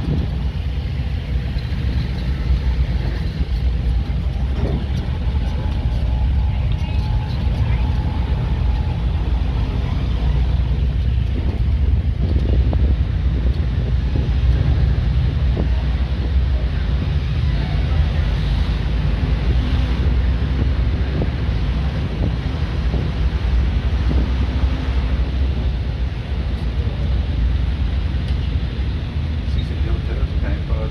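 Steady low rumble of a moving road vehicle, engine and road noise heard from on board.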